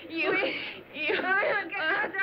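Women crying out during a catfight: two high-pitched, wavering cries, a short one at the start and a longer one about a second in.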